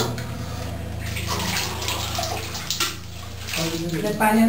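Water splashing and trickling as it is poured over stone idols during a ritual bath, over a steady low hum.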